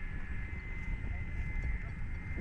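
Steady, thin high whine from distant RC model aircraft motors overhead, holding a near-constant pitch, under heavy wind rumble on the microphone.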